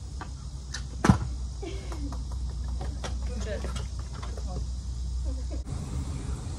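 A stunt scooter landing a jump on a concrete path: one sharp clack about a second in, then a low steady rumble of its wheels rolling that cuts off near the end, with faint voices in the background.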